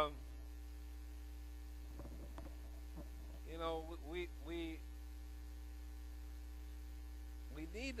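Steady electrical mains hum in the recording, with a few quiet spoken syllables from a man about halfway through.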